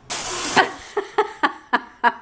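PetSafe SssCat motion-activated cat deterrent firing, set off by a hand passed in front of its sensor: a sharp hiss of compressed-air spray lasting about half a second. This shows the unit is armed and working. A woman then laughs in short bursts, about four a second.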